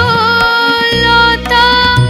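A female vocalist singing a Bengali song. She holds one long note with a slight waver, then moves to a new note about a second and a half in, over instrumental accompaniment.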